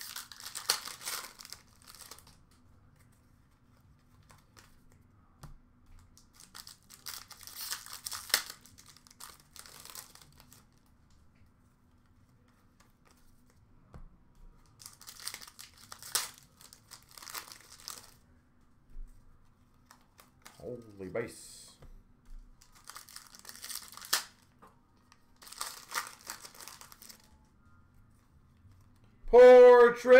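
Foil wrappers of Upper Deck hockey card packs crinkling and tearing as packs are opened, in about four separate bursts of a few seconds each. A faint steady hum runs underneath.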